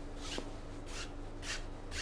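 A wide brush rubbing wet oil paint across a canvas in repeated scratchy strokes, about two a second, blending the horizon soft.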